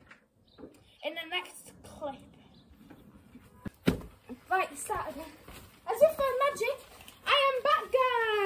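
Children's voices and laughter, with a single sharp thump about four seconds in and a loud, drawn-out shout near the end.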